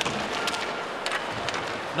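Ice hockey game sound from the ice: a steady crowd murmur in the arena with a few sharp clacks of sticks and puck, about half a second in, again after a second and once more a little later.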